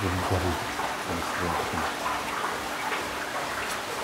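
Whole lamb sizzling as it hangs over hot coals in a clay tandoor: a steady hiss.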